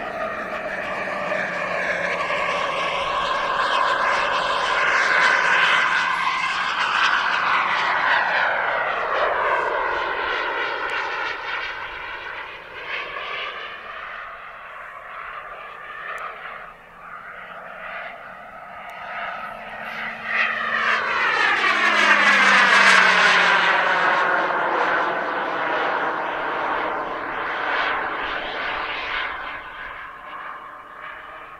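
Turbine engine of a Skymaster F-18C Hornet model jet whining through two fly-bys. Each pass swells, then falls in pitch as the jet goes by; the second, about two-thirds through, is the louder.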